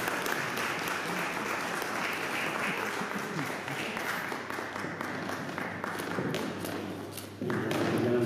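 Audience applauding steadily, the clapping dying away about seven seconds in as voices take over.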